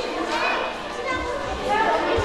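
Overlapping voices of women and small children talking and calling out.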